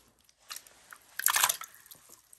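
Brief wet squelching from a handful of live medicinal leeches being handled, with a louder short squelch a little past a second in.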